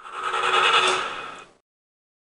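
A short noise-like sound effect that swells up and fades over about a second and a half, with a faint steady tone running through it, then cuts off sharply.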